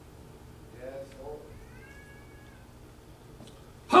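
Faint, short vocal sounds in the room while the preacher is silent. Near the middle comes a higher, drawn-out call lasting about a second.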